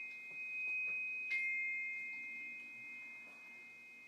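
Glockenspiel bars ringing out in two high sustained tones, with one more note struck about a second in, the sound slowly dying away.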